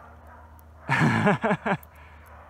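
Hampton Bay Littleton ceiling fan motor spinning with its blades broken off, giving a low steady hum. About a second in, a man's voice breaks in briefly, a short laugh or a few words, which is the loudest sound.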